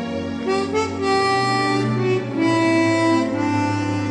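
Chromatic harmonica playing a slow jazz ballad melody in long held notes over a low bass accompaniment.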